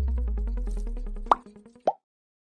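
Logo-animation sound effects: a deep bass rumble fading away under a fast, even ticking, then two short rising pops near the end, the kind of pop effect that plays as animated like and subscribe buttons appear.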